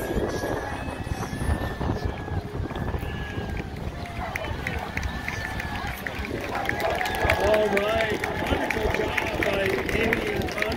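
Outdoor crowd ambience: wind rumbling on the microphone under the voices of spectators, with a voice coming through more clearly from about six and a half seconds in.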